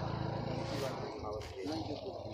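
Indistinct men's voices talking over a steady low engine-like rumble with an even pulse.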